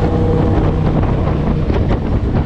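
Wind rushing over the microphone of a moving motorcycle, with the bike's engine running steadily underneath at cruising speed.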